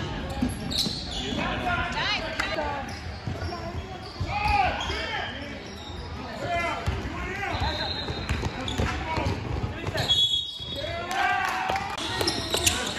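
Basketball game on a hardwood gym floor: a ball bouncing and thumping amid players' and onlookers' voices calling out. The sound drops out briefly about ten seconds in.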